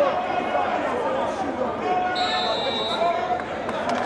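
Indistinct shouting and talk of players and spectators at an outdoor football match, with a whistle blown and held for just over a second, starting a little past halfway.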